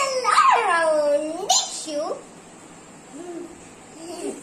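A young girl's excited squealing cheer with no words: a high voice sliding up and down for about two seconds, then a short yelp. A faint brief vocal sound follows near the end.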